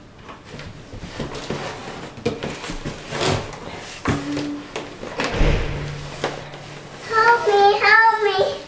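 Large cardboard box scraping and bumping as it is pushed along a hardwood floor, with a heavier thump about halfway through. A child's voice comes in near the end.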